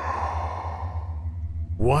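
A long breathy exhale like a sigh, starting abruptly and fading over about a second and a half, over a steady low hum. A man's voice starts a word near the end.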